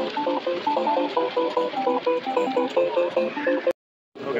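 Music with a fast melody of short, clipped notes. It cuts off abruptly shortly before the end, into a moment of silence.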